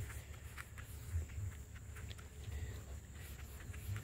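Foam applicator pad rubbing liquid wax across a car's painted hood: faint, scattered scuffs and small clicks over a low rumble.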